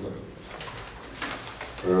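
A pause in a man's speech: quiet room tone, then near the end a drawn-out hesitant "uh" in a steady voice.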